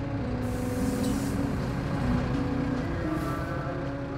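A bus engine running with a steady low rumble, stopped with passengers waiting outside. There are two short bursts of compressed-air hiss, one about half a second in lasting about a second and a shorter one near the end.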